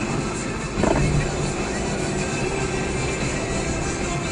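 Music from a car radio playing over steady engine and road noise inside a moving car's cabin, with a short louder sound about a second in.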